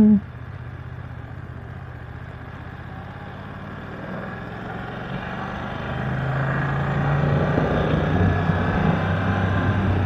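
BMW F900R's parallel-twin engine pulling in second gear as the motorcycle accelerates, growing louder from about halfway through, with wind and road noise.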